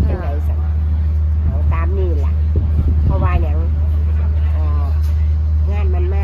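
A steady low rumble, like a running motor or engine, with short stretches of voices talking over it.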